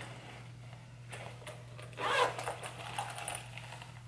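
Zipper of a small silver metallic travel bag being pulled open, with scratchy rustling as the bag is handled, loudest about two seconds in.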